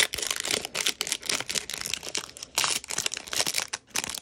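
Plastic trading-card pack wrapper being torn open and crinkled between the hands: a dense, irregular run of crackles and rips.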